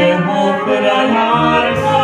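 Czech folk brass band (dechová hudba) playing a song, with tuba bass notes under the brass and a woman singing into a microphone.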